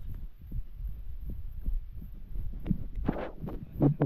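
Dull low thuds of footsteps on a dirt and snow trail, picked up through a handheld camera that is moving with the walker, mixed with handling rumble.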